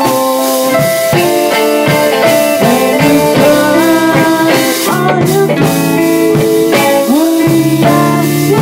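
Rock band playing loudly: electric guitar, bass and drum kit in a full-band song.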